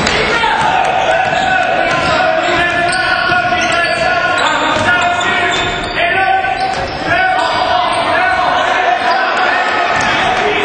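Live basketball game in a gym: a ball bouncing on the floor amid continuous shouting and chatter from players and crowd.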